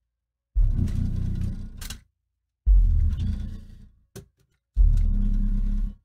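Dayton Audio 21-inch subwoofer playing very deep, loud bass-heavy music, heard as three bursts of about a second and a half each, each starting hard and fading, with dead silence between them.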